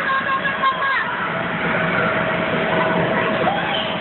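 Several children's voices chattering and calling out over one another, with a steady hum underneath from about a second in.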